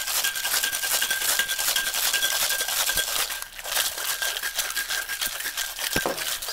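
Ice rattling hard and fast inside a metal cocktail shaker being shaken by hand.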